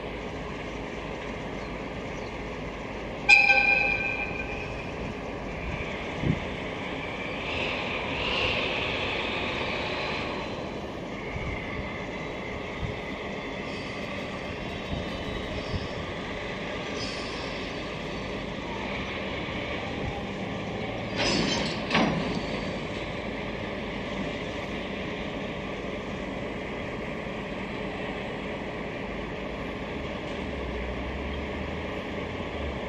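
JR East DE10 diesel-hydraulic locomotive moving slowly, its engine running, with one short horn blast about three seconds in. Clanks about twenty-one seconds in as it couples onto flat wagons loaded with rails.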